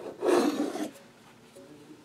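A short rasping rub, just under a second long, from a decorated metal cookie tin being turned over in the hand.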